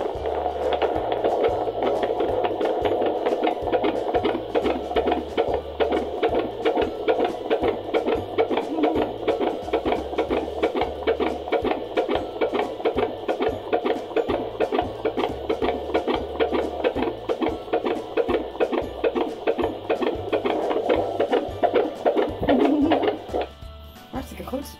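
Full-term fetal heartbeat through a handheld Doppler's speaker: a fast, even, whooshing pulse.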